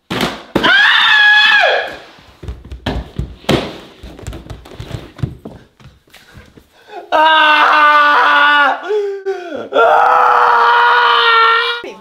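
A man screams, then a string of thumps and knocks comes as a fall tumbles down wooden stairs, followed by two long, loud yells of pain. The cries are put on for a staged fall down the stairs.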